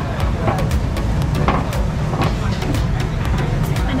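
Busy restaurant ambience: a steady low traffic rumble under background chatter, with many short sharp clicks and clatter.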